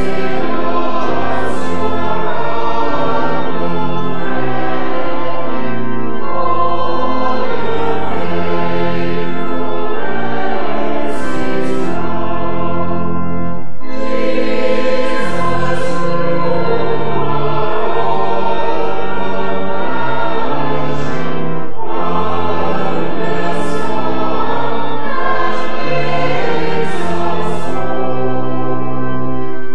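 Church choir singing with organ accompaniment, sustained chords over long held bass notes, with a brief pause between phrases about fourteen seconds in.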